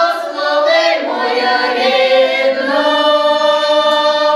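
A women's folk ensemble singing a cappella in traditional Ukrainian style, several voices together holding long, drawn-out notes.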